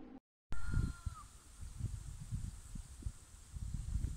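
Wind buffeting a phone's microphone outdoors: irregular low rumbling gusts over a faint steady hiss. A short clear high tone sounds about half a second in and lasts under a second.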